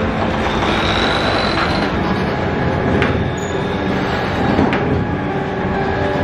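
Oil mill machinery running: a steady mechanical rumble with a thin squeal in the first two seconds and a few sharp clacks spread through it.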